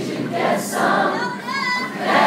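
Concert audience singing along in chorus to a live acoustic guitar song.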